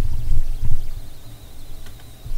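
Steady low electrical hum with some low rumbling, loudest early and fading toward the end, and a faint thin high tone in the second half.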